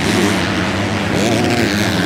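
250cc four-stroke motocross bikes racing on the track, engines running hard with the revs going up and down; in the second half one engine's pitch rises and falls.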